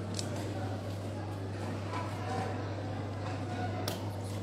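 Indistinct murmur of voices over a steady low hum, with one sharp click just after the start and another near the end.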